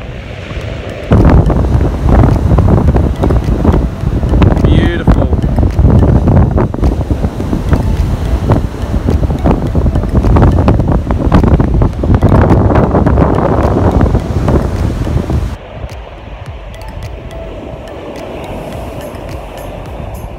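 Strong wind buffeting the phone's microphone, with surf breaking on the beach underneath. The wind noise is loud and gusty, then drops off suddenly about three-quarters of the way through, leaving a quieter wash of wind and waves.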